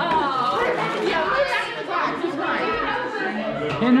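Indistinct chatter of several people talking at once in a room, with no clear words; near the end a voice calls out.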